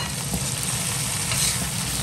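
Small river fish sizzling as they fry in a hot wok, stirred with a metal spatula, with a single short scrape or clack of the spatula against the pan about one and a half seconds in.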